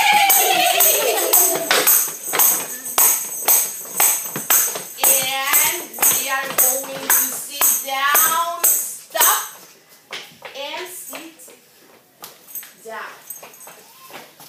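Tambourine struck by hand in a steady quick beat, about three strokes a second, as a beat for children to gallop to. It stops about ten seconds in, leaving a few scattered taps, with children's voices over it.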